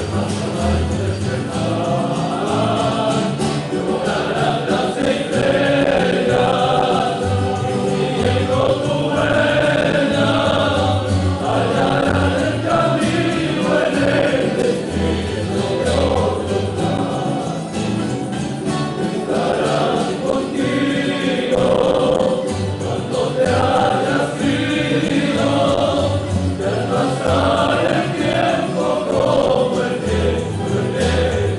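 A tuna, a male student ensemble, singing a song in chorus to strummed guitars and small Spanish lutes, with the music running steadily.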